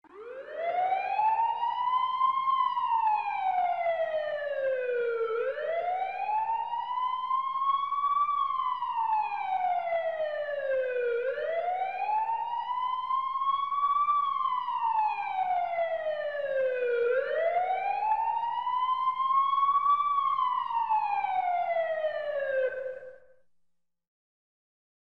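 Emergency siren wailing in slow cycles, its pitch rising and then falling four times about six seconds apart, stopping shortly before the end.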